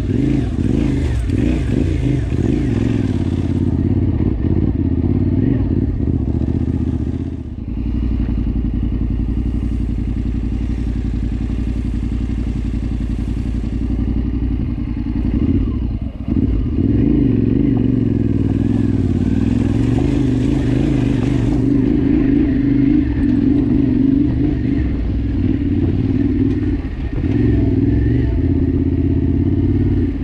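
Yamaha Ténéré 700's parallel-twin engine running through an Akrapovič exhaust with the dB killer removed, pulling steadily along a dirt track, with short dips in the engine note about seven seconds in and again around sixteen seconds. A hiss rises over it near the start and again about twenty seconds in.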